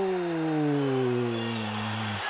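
A man's long, drawn-out goal shout, the commentator's held 'gooool', one unbroken note sliding slowly down in pitch and cutting off just at the end.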